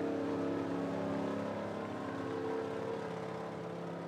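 Dirt late model race car's V8 engine running at a steady, unchanging pitch as it cruises slowly on a victory lap, fading a little toward the end as the car pulls away.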